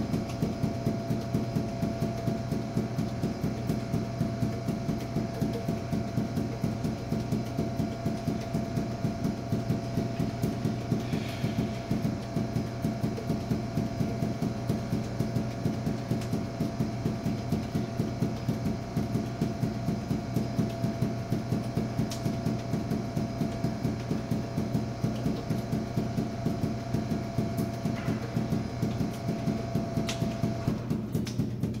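Five juggling balls force-bounced off a hard floor, each one hitting with a sharp bounce in a fast, even, unbroken rhythm, over a steady hum.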